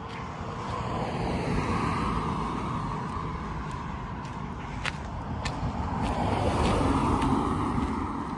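Cars passing on a city street: two swells of tyre and engine noise, the first about two seconds in and the louder one near the end as a sedan goes by close.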